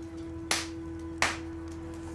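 Two short, sharp crinkles of tissue paper from a gift bag being handled, about three-quarters of a second apart, over a soft, steady held note of background music.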